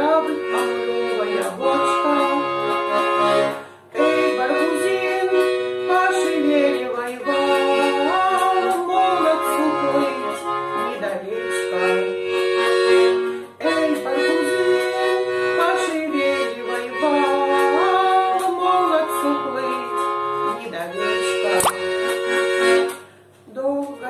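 Bayan (Russian button accordion) playing an instrumental passage of a Russian folk song in F-sharp major. A right-hand melody moves over sustained chords and a steady pulsing bass-and-chord accompaniment, with short breaks about every ten seconds.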